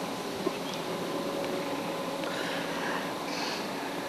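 Steady background hiss with a faint steady hum underneath and no clear sound event.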